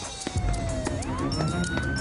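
Police siren wailing, its pitch sliding slowly down and then swinging back up about halfway through.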